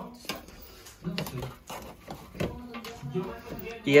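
A few light clinks and knocks of serving utensils against a cooker pot, an air fryer basket and plates, with quiet voices in the background.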